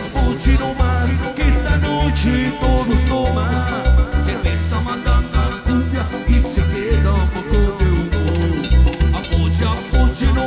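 Live cumbia band playing an instrumental passage: a keyboard melody over a steady, pulsing bass and percussion beat.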